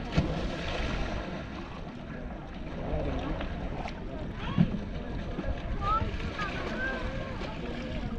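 Wind rumbling on the microphone, with distant voices calling out over the water and two short sharp thumps, one right at the start and one about halfway through.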